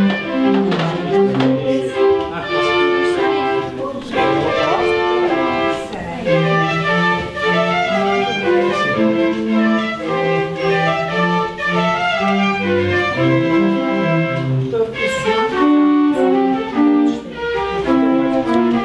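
The Salzburger Stier, a barrel-driven mechanical pipe organ, playing a tune. Its pinned wooden barrel sounds held chords under a moving melody, with notes lasting about half a second to a second.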